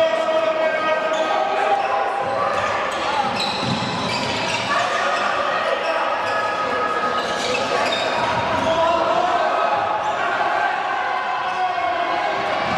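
A handball bouncing repeatedly on an indoor court floor, with voices carrying on throughout and echoing around a large sports hall.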